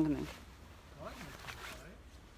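A close voice trails off at the start, then faint voices talk further off, with light rustling.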